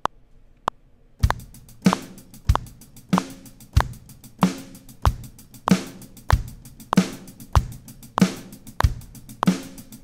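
Logic Pro's SoCal software drum kit played live from a MIDI keyboard at 96 BPM. A couple of metronome count-in clicks come first; about a second in, a steady kick-and-snare beat with hi-hats starts and runs on.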